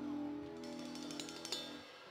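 A live band's held closing chord at the end of a song, slowly fading and cutting off just before the end, with a few light clicks near its end.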